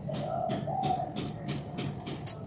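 A pigeon cooing: one low, drawn-out call lasting about a second and a half, with a few short clicks and rustles from hair being handled.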